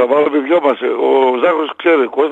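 Speech only: a man talking on a radio talk show.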